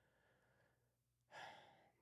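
A man sighing once, a faint breath that swells about a second and a half in and fades within half a second, amid near silence.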